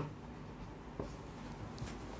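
Marker writing on a whiteboard: faint strokes with a light tap about a second in.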